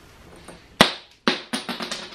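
A beer bottle cap being levered with the bottle opener built into a flip-flop's sole: one sharp click, then a sudden clatter of quick ringing metallic ticks.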